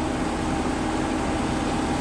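A steady mechanical hum with a faint held tone, unchanging throughout.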